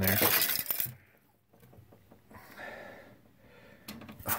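Small metal sandbox shovel scraping and clinking against a glass tank floor while scooping out substrate, loudest in the first second, then fainter scraping.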